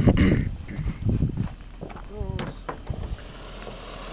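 Footsteps crunching on gravel as people back away from a lit fountain firework, with a brief voice sound. Near the end a steady, quieter hiss sets in as the fountain starts spraying sparks.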